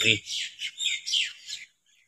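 A bird chirping in a quick run of four or five short, high calls that swoop up and down, then stopping.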